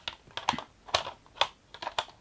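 Hard plastic roof panels of a Playmobil KITT toy car being handled and pressed back into place: an irregular run of sharp clicks and taps, several to the second.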